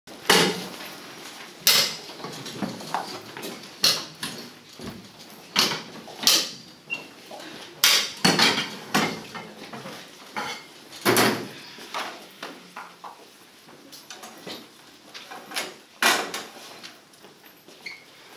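Wooden box props and a board being moved and set down: a dozen or so sharp knocks and bumps at uneven intervals, with lighter clatter between them.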